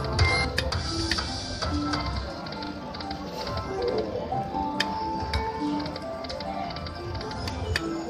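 Poker machine game sounds: short electronic jingles and tones over rapid ticking and clicking as the reels spin and stop.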